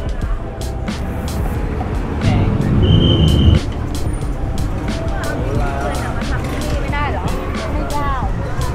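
Background music with a steady beat over street sound: passers-by talking and traffic, with a vehicle passing close about two seconds in, its noise cutting off suddenly about a second and a half later.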